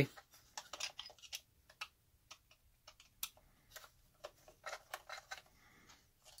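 Faint, irregular small clicks and ticks of a hex driver turning a screw out of the motor plate of a Traxxas Maxx RC truck, metal tool on screw and plastic chassis.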